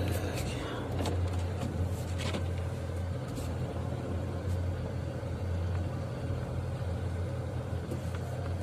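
Car engine running, heard from inside the cabin as a low, steady hum.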